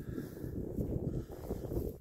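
Wind buffeting the microphone: a gusty low rumble that rises and falls.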